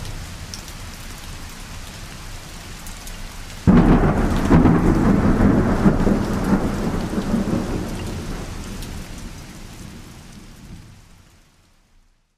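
Thunderstorm: rain hissing steadily, then a loud roll of thunder breaks in suddenly about four seconds in and rumbles on, fading away to silence near the end.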